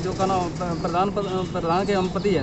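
Speech only: men's voices talking in short broken phrases. No distinct non-speech sound stands out.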